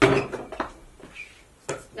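A basketball hitting a portable hoop's backboard with a loud, ringing bang, followed by a fainter knock and then a sharper one near the end as the ball comes down and bounces.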